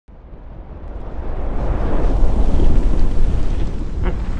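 A deep, noisy rumble that swells up from silence over the first two seconds and then holds.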